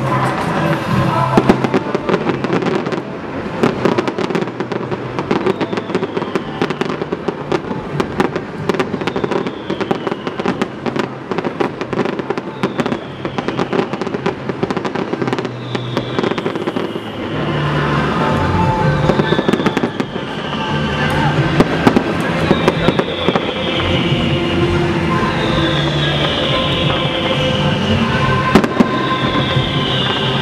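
Aerial fireworks bursting in a dense, continuous barrage of bangs and crackles, with music playing alongside. The sound thickens and gets louder a little past halfway.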